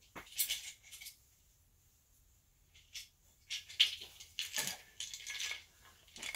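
Clinks, clatter and rattling of metal parts being handled and moved about, in several short spells, busiest and loudest about four seconds in.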